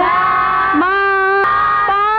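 A class of voices chanting a lesson in unison in a sing-song drone. Each syllable is held on one steady pitch for just under a second, and the pitch steps to a new note about a second in.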